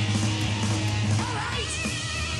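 Heavy metal band playing live: distorted electric guitar, bass and drums, with a high note bending upward about halfway through.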